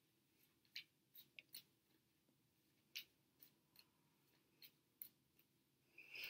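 Near silence with faint, scattered clicks and taps of tarot cards being handled and shuffled in the hands, about ten in all.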